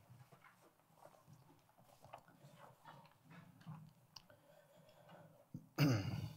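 Faint rustling and shuffling of a congregation getting to its feet, with scattered soft clicks and knocks. A short, louder voice sound comes near the end.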